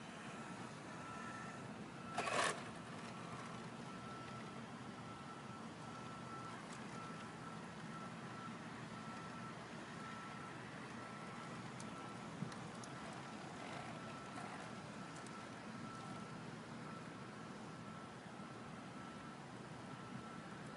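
Small electric drive motors of a self-balancing tracked robot, standing upright on the ends of its treads, giving a faint high whine that keeps cutting in and out as it holds its balance, over a steady background hiss. A brief louder clatter comes about two seconds in.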